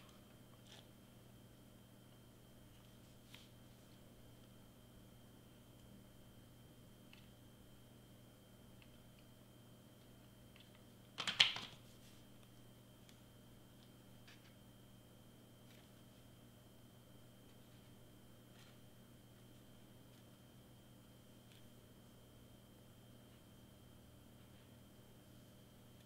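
Quiet room tone with a faint steady hum and a thin high whine, a few faint ticks, and one brief louder handling noise about eleven seconds in as hands work a glued cardstock strip around a small cardboard-and-foil can.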